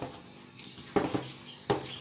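Hands kneading and squeezing a crumbly mixture of crushed biscuits and cocoa in a ceramic bowl: a faint crumbly rustle, with two short knocks, about a second in and near the end.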